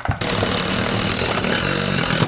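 Ridgid cordless driver running hard as it drives a screw through a steel E-track rail into a wooden wall stud, starting a fraction of a second in and running steadily with a high whine.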